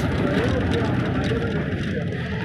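Steady rumble of a moving vehicle's engine and road noise, heard from inside the vehicle, with faint voices mixed in.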